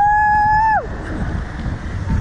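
A woman's high, held scream lasting under a second, then wind rushing over the microphone as the slingshot ride swings through the air.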